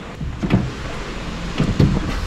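Steering box and linkage worked by turning the steering wheel, with a couple of short creaks and a click. The steering box has come loose on its mounting.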